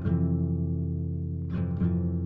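Acoustic guitar strumming chords in a folk song, each chord left to ring; a strum at the start, then two more close together about one and a half seconds in.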